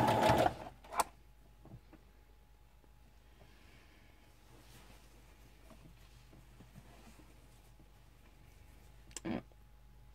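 Domestic sewing machine stitching with its speed set to the midpoint, stopping about half a second in. A sharp click follows about a second in, then it is quiet apart from faint handling, with a short knock near the end.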